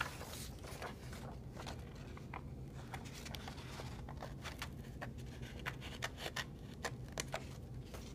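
Small scissors cutting paper: faint, irregular snips and blade clicks as the paper is turned and cut along an outline.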